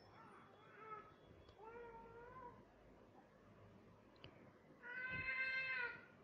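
A cat meowing three times, two faint calls early and a louder, longer call of about a second near the end.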